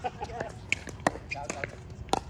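Pickleball paddles striking the hard plastic ball in a rally: several short sharp pops, the two clearest a little under and just over a second in.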